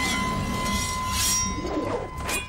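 A sustained metallic ring, as of a blade, with a swish about a second in.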